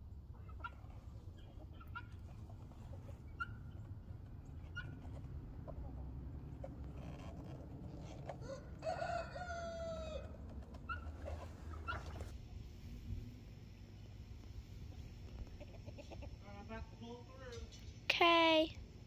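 A rooster crowing once, a call of about a second and a half roughly halfway through, with a shorter call near the end, over a faint low rumble.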